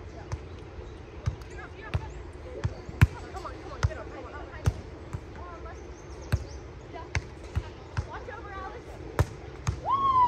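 A volleyball being struck again and again by hands and forearms in beach play: about fifteen sharp slaps at uneven intervals, with faint voices in the background.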